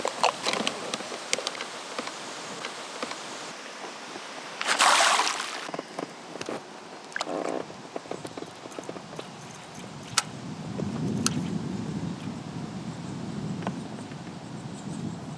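Small waves lapping and slopping against an inflatable pontoon, with scattered knocks and clicks, and a loud splash-like rush of noise lasting about a second around five seconds in.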